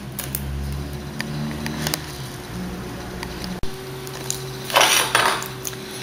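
Light clinks and taps of a serving utensil against a glass baking dish and glass cup as set gelatin is cut and served, with a short scrape about five seconds in, over a steady low hum.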